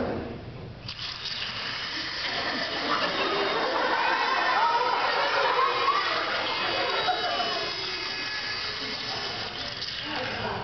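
A grinding, buzzing sound effect of a termite chewing through a piece of wood. It starts about a second in and runs on steadily.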